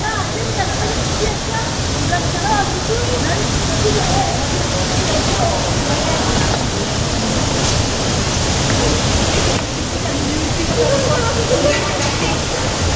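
Small hydroelectric turbine and generator running: a steady rushing noise of water driving the turbine through its penstock, with a low hum underneath.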